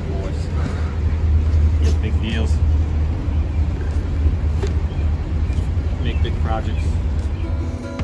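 Roadside outdoor noise: wind rumbling on the microphone over passing road traffic, with a few light knocks.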